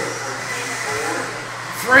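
Electric 1/10-scale 2wd modified buggies racing on a dirt track: a steady whirring hiss of brushless motors and tyres, with no single event standing out.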